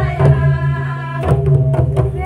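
Adivasi folk dance music: drum strikes a few times over a steady low drone, with singing in the first half.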